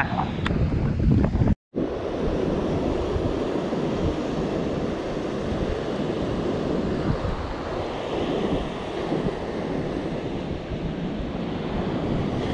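Surf breaking on a sandy beach under strong wind, the wind buffeting the microphone and adding a steady rumble. The sound drops out for a split second about one and a half seconds in.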